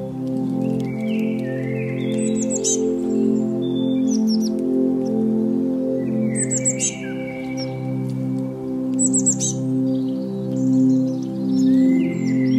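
Soft ambient music with steady, sustained low chords, over which songbirds chirp and trill in four short bursts spread across the stretch.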